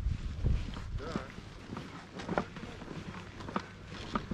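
Footsteps of people walking down a grassy dirt track, uneven steps roughly half a second to a second apart.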